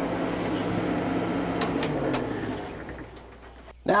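Kubota M100GX tractor's four-cylinder diesel engine running steadily, with a few light clicks. About two seconds in, its note drops and the sound fades away.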